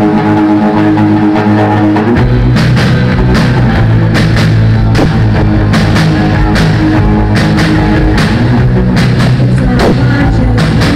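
Live rock band playing loud: a held chord rings, then the drum kit and bass come in about two seconds in and the full band plays on with a steady beat.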